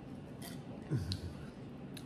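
Quiet chewing of crispy breaded chicken, with a few faint clicks and a short low "mm" about a second in.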